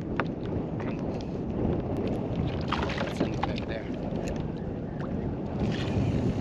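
Steady wind and water noise on a small kayak at sea, with a few sharp clicks and taps from handling the fishing gear, several of them close together around the middle.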